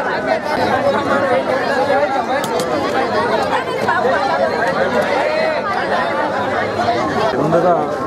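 Crowd chatter: many voices talking over one another at once. Near the end one man's voice stands out more clearly.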